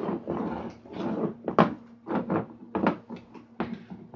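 A dog playing close to the microphone: an irregular run of sharp knocks and scuffs mixed with short low sounds from the dog.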